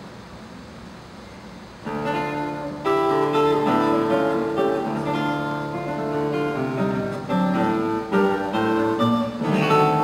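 Solo classical guitar with nylon strings: after a faint, steady hiss, the guitarist begins a piece about two seconds in, plucking single notes and chords that ring on.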